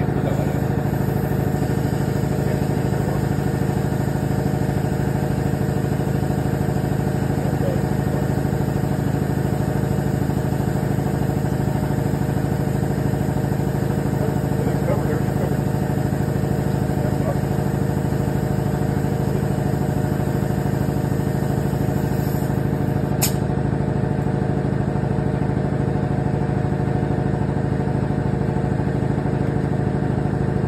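A motor runs with a steady, unchanging drone, and a single short sharp click comes about 23 seconds in.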